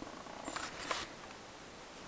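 Faint handling noise of a handheld camera being turned around, a few light clicks and rubs, over quiet woodland background hiss.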